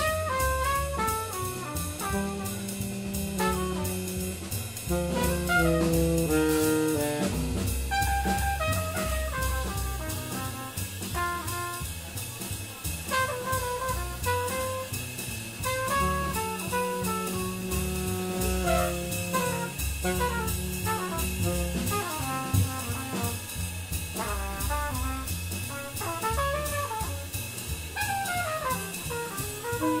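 Live jazz quartet playing: tenor saxophone and trumpet lines, some notes held long, over double bass and drum kit with steady cymbal work.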